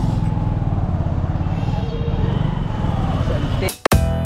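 Motorcycle engine running steadily at low revs, heard up close from the pillion seat. Near the end it cuts off abruptly as loud music with sharp plucked notes breaks in.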